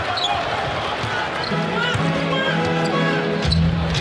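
A basketball being dribbled on the hardwood court, with held notes of arena music playing over the hum of the crowd.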